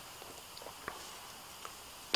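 Quiet room tone with two faint, short clicks about a second in and near the end, from a hand handling and letting go of a Roland Duo-Capture EX audio interface on a bamboo table mat.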